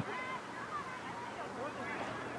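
Indistinct voices of players and onlookers calling out across a lacrosse field, fainter than nearby speech, over a steady outdoor hiss.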